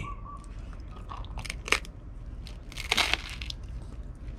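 Crunching and chewing of cream cheese toast close to the microphone: a scatter of short, crisp crunches, the sharpest about a second and a half in, with a cluster near three seconds.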